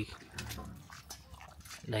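A puppy eating with its head down, making faint scattered clicks of chewing.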